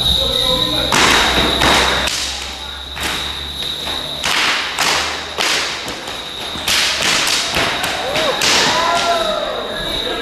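Costumed carnival masqueraders' performance: a series of about ten loud, sharp impacts, cracks and thuds at irregular intervals, each ringing briefly in a large hall.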